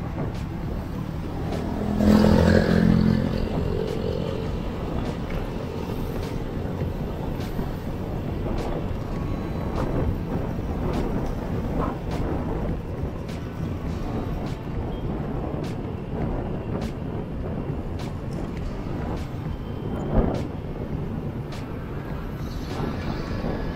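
Motorcycle engine running steadily while riding in city traffic, with road and wind noise. A louder swell with a pitched tone comes about two seconds in, and a single sharp knock near the end.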